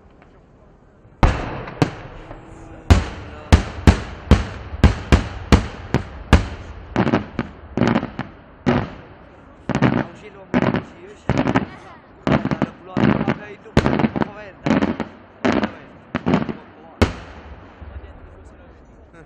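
Daytime aerial firework shells bursting overhead. After a bang about a second in comes a rapid string of loud bangs, two or three a second, each trailing off in a short echo. The string stops about a second before the end.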